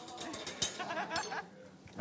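Garlic hitting hot oil in a stainless sauté pan, setting off a short burst of crackling that starts suddenly and dies down within about half a second.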